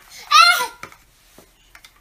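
A young child's brief high-pitched vocal sound about half a second in, followed by a few light clicks of large plastic Mega Bloks building blocks being handled and pressed together.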